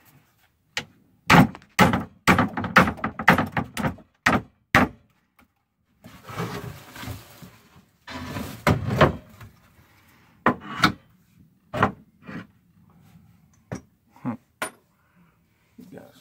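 Wooden boards knocking and thudding as they are handled and laid across attic joists: a quick run of irregular knocks in the first five seconds, then scattered single knocks with some rustling between.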